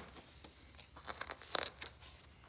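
Pages of a picture book being handled and turned: a few short crinkly rustles and clicks, loudest a little past the middle.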